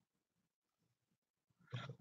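Near silence: quiet room tone, with a faint sound starting shortly before the end.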